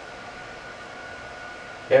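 Steady background hiss with a faint, high, unchanging tone running under it, in a pause between spoken sentences.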